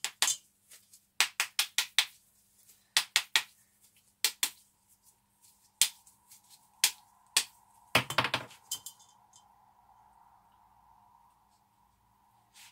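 A hard plastic bath bomb mould tapped and knocked against the rim of a stainless steel mixing bowl in quick clusters of clinks, knocking excess bath bomb mixture back into the bowl; the loudest knocks come about eight seconds in. A faint steady hum follows in the later seconds.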